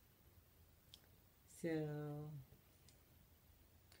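A few faint, sharp clicks as picture frames are handled and shifted against each other, over quiet room tone.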